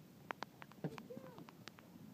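Light footsteps and a few sharp clicks of someone walking on wet concrete, with a faint distant voice calling briefly about a second in.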